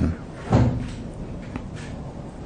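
A single dull thump about half a second in, then quiet room tone with a faint click near the end.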